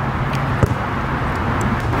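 Steady low outdoor background hum with a soft knock just over half a second in and a few fainter ticks.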